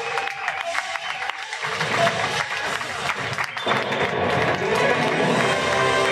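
Theatre audience applauding and cheering over music. About two-thirds of the way in, the music becomes fuller and steadier as the clapping gives way to it.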